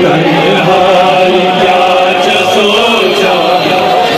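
Men's voices chanting a Kashmiri noha, a Shia mourning lament for Zainab, in one loud, unbroken chant.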